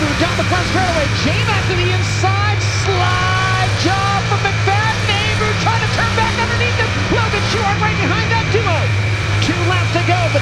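Sprint car's V8 engine running hard at racing speed, heard onboard from the cockpit during a dirt-track feature race, with a voice faintly over it.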